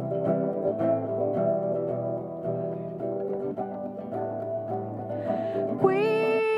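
Solo acoustic guitar played, repeated plucked notes and chords ringing on as the introduction of a song. Right at the end a singing voice comes in over the guitar.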